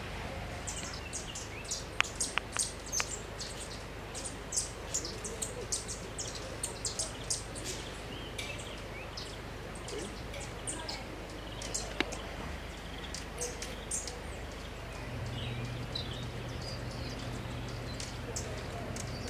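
High, thin bird chips repeated many times over, several a second. Sharp clicks cut in, four close together about two seconds in and one more about two-thirds through, and a low hum comes in near the end.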